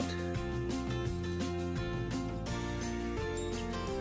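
Background music with held notes and a steady beat.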